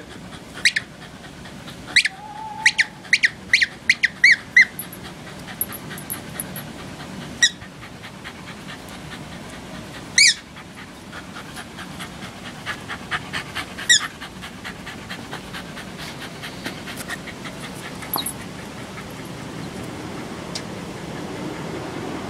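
Small terrier playing tug with a tennis ball in its jaws, with short high-pitched squeaks: a quick run of about eight a couple of seconds in, then single ones every few seconds.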